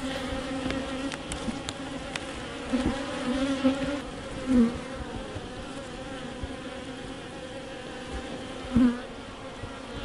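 Many honeybees buzzing at an open hive: a steady hum with a slightly wavering pitch.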